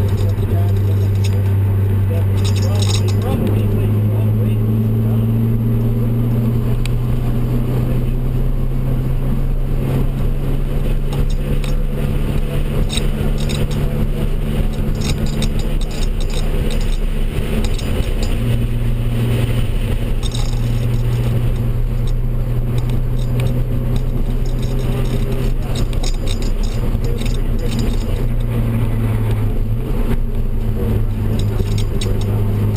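Turbocharged BMW E36 M3's straight-six engine heard from inside the cabin: a steady drone with road and wind noise, its pitch stepping up or down a few times as the revs change.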